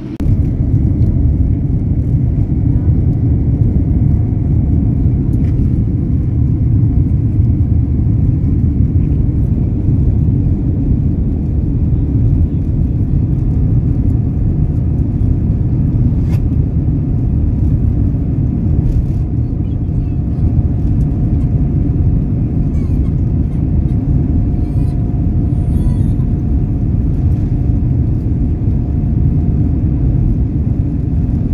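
Steady low rumble inside a jet airliner's cabin as the plane rolls along the ground, engines running, with a faint steady whine that grows clearer in the second half.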